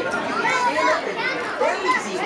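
A group of young children chattering and calling out over one another, many high voices overlapping without a break.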